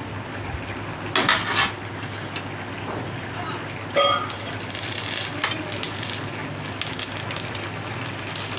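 Metal utensil clinking and scraping against a steel pan while turning a flatbread on a gas stove. There is a quick run of sharp clinks a little over a second in and one louder, briefly ringing clink at about four seconds, over a steady low hiss.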